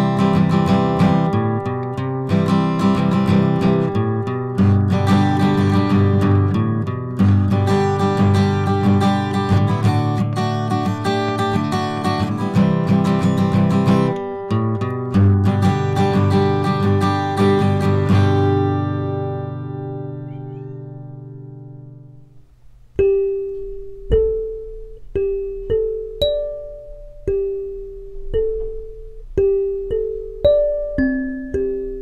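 Acoustic guitar picked, its last notes ringing out and dying away about twenty seconds in. Then a clear acrylic kalimba's metal tines are plucked one note at a time, about a note a second, each note ringing on. Both are picked up by a tiny dynamic microphone plugged straight into a camera, with no effects.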